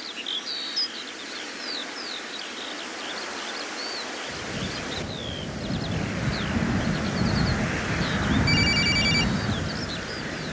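Outdoor ambience with many small birds chirping, joined about four seconds in by a low rumble. Near the end a mobile phone rings briefly with a pulsing electronic tone.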